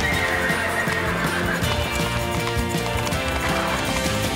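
A horse whinnying, then hooves clopping on stone as it moves about, over background music.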